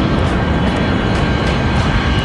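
Loud, steady rumbling roar of a jet airliner in flight, laid under a dramatic music score.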